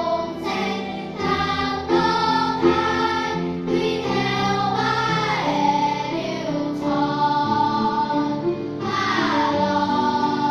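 A children's choir singing together, holding long notes, with a couple of notes sliding down in pitch.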